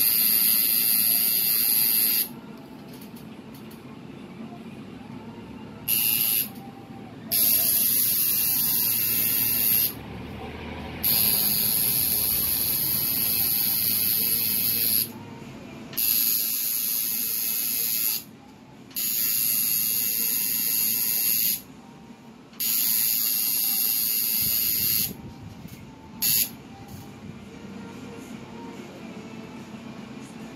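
Coil tattoo machine buzzing as it needles skin. It runs in bursts of about half a second to four seconds and stops briefly between passes, about eight times over.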